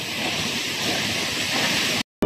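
Steady rushing hiss of Sipi Falls' water falling and spraying close to the microphone.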